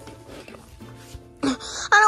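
Faint background music, then a short rustle about one and a half seconds in, and near the end a high-pitched voice breaking into a wailing cry.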